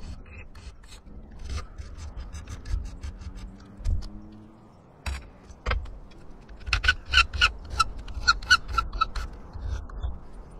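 Hand file scraping along a blue-anodized aluminium arrow-shaft antenna element in repeated short strokes, stripping off the paint and anodizing so the element will make electrical contact with the boom. There is a brief lull about four seconds in, then the strokes come faster and louder near the end, with a light metallic ring.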